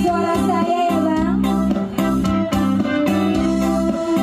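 Live band music over stage speakers: a sung melody with guitar and a steady beat.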